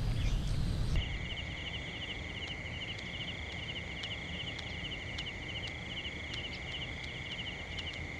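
Night insect chorus of crickets: a steady high buzz with short, rapid trains of chirps repeating over it. It begins about a second in, where a louder low rumble cuts off.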